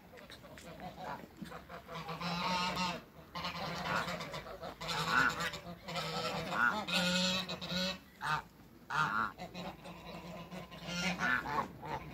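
Domestic goose honking, a series of loud, nasal repeated calls that start about two seconds in and run on with a brief lull near the end.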